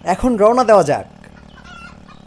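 A man's voice making a short warbling vocal sound, its pitch wavering quickly up and down for about a second before it stops.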